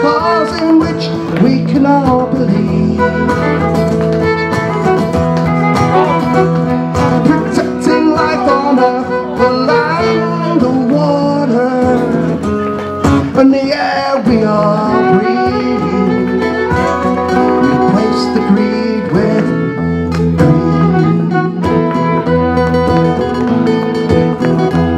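Live acoustic guitars strumming an instrumental passage of a folk song, with a wavering, bending lead melody line over the chords.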